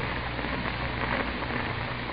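Steady hiss with a low hum underneath: the background noise of an old radio-show recording during a pause in the dialogue.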